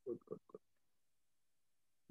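Three short, faint snatches of a person's voice over a video call in the first half second, then near silence.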